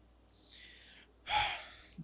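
A person's audible breath between sentences: a soft intake of air, then a short breathy gasp about a second and a half in.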